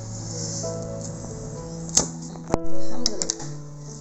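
Background music of steady held notes, with a few sharp clicks between two and three seconds in, the loudest about two and a half seconds in, as the point of a pair of scissors is pushed through cardboard to punch a hole.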